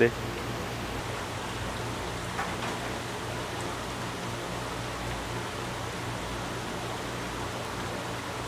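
Steady rushing, water-like hiss with a low hum underneath, from the stall's live seafood tanks circulating and aerating their water.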